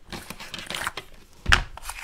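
Small kitchen handling sounds as ground ginger is measured out of a spice jar with a teaspoon over a bowl of flour: light rustling and clinks, with one louder knock about one and a half seconds in.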